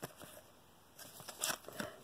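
Cardboard trading cards being shuffled and slid against each other in the hands: a light click at the very start, then a few quick flicks and scrapes in the second half.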